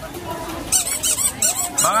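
A quick run of high-pitched squeaks, about a second in, over market chatter.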